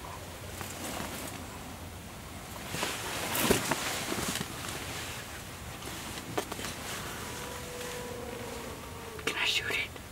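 Hushed whispering between people close to the microphone, with soft rustling and a few short clicks, the busiest stretch a little after the middle.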